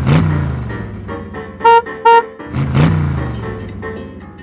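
Cartoon vehicle sound effects over music: a car engine note swells and passes by twice, with two short horn toots near the middle.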